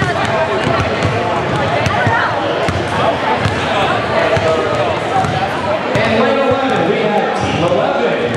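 A basketball being dribbled on a hardwood gym floor, bounce after bounce, under the steady chatter of a crowd of people.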